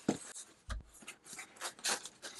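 Hands handling a closed cardboard box to open it: faint rubbing and scraping on the cardboard, with a few light knocks and a low thud about a second in.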